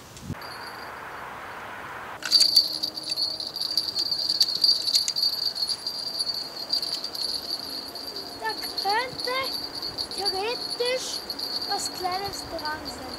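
A small bite bell clipped to a fishing rod's tip starts ringing about two seconds in and keeps jingling steadily as a fish pulls on the worm bait; it signals a bite with the fish on the line while it is reeled in.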